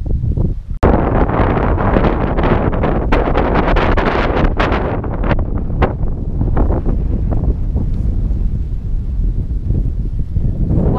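Strong wind buffeting the camera microphone in irregular gusts, with a sudden brief break a little under a second in.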